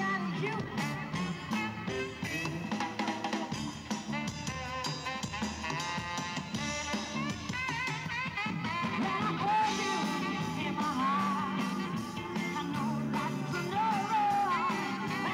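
Live rock band playing: a singer's lead vocal over drum kit and electric guitar, amplified through the stage sound system.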